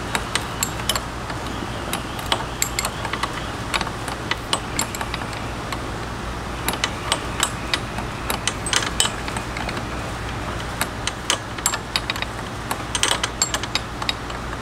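Small metal wrench working a brake-line fitting, giving irregular light metallic clicks and clinks as it is turned and repositioned, over a steady low hum.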